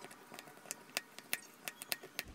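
A metal spoon clinking against a ceramic bowl while stirring yogurt and berries: a string of about six irregular sharp clicks, closer together in the second half.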